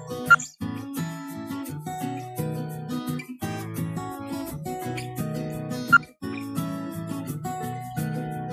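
Background music led by a plucked acoustic guitar, in a steady picking rhythm. It is broken twice, about a third of a second in and about six seconds in, by a sharp click and a brief drop-out.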